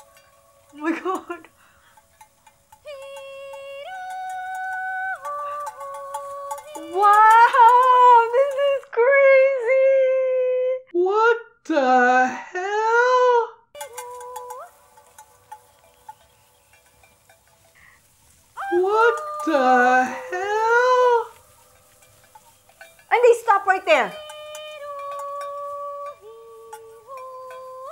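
Kulning, the Swedish herding call for cattle: a woman's high voice holding long steady notes and singing louder swooping phrases that rise and fall, with pauses between calls.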